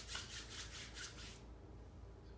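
Oily palms rubbed briskly together to spread beard oil: a faint run of quick back-and-forth rubbing strokes, about five a second, stopping about a second and a half in.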